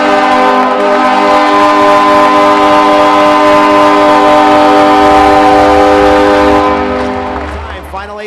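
Arena goal horn blaring a steady chord of several tones over a cheering, clapping crowd, signalling a home-team goal. The horn fades out near the end.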